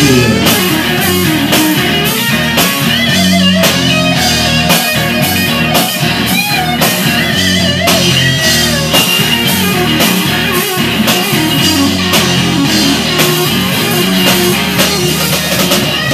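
Live rock band playing an instrumental break: electric guitar with wavering, bent notes over bass and a steady drum beat.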